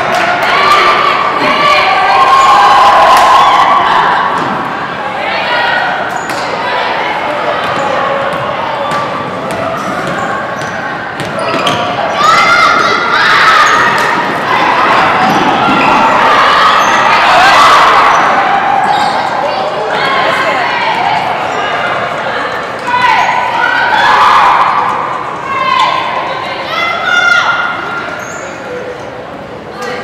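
Basketball game sounds in a large gym: a ball bouncing on the hardwood court and the thuds of play, mixed with players and spectators calling out and talking throughout.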